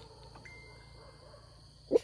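Quiet rural ambience with a steady high-pitched insect drone, then one short, loud sound just before the end.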